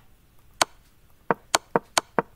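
Computer mouse clicking five times: one sharp click, then four quicker ones about a quarter second apart, stepping back through moves.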